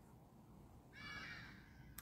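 Near silence, broken by one faint, high-pitched animal call that starts about a second in and lasts under a second.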